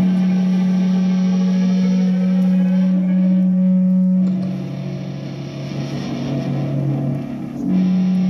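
Live band music led by an electric guitar played through effects with some distortion, over long held low notes that drop in pitch about halfway through and return near the end.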